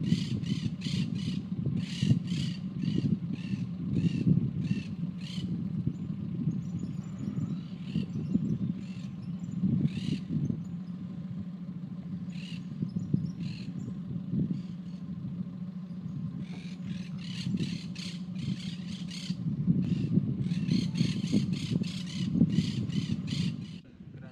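A bird calling repeatedly in runs of harsh calls, about two to three a second, with pauses between the runs, over a steady low rumble.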